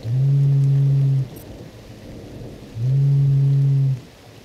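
Incoming phone call ringing: two long, low buzzing rings, each a little over a second, the second starting about three seconds in, over a steady background of rain.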